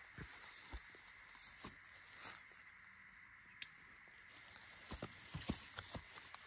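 Quiet outdoor stillness with faint rustling and scattered small clicks, one sharper click partway through, and a few soft thumps near the end, like handling or steps in dry grass.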